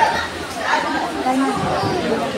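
Indistinct talking and chatter of several people in a large indoor room, with no clear words.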